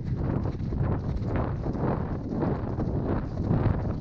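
A pony's hoofbeats on a wet grass track, picked up by a helmet camera with wind buffeting the microphone.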